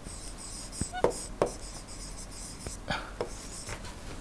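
A stylus writing by hand on the glass of an interactive display: light, irregular taps and faint scratching as letters are formed.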